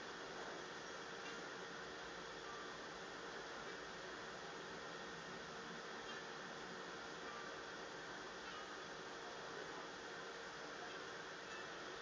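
Faint steady hiss of the recording's noise floor, with a faint steady hum under it.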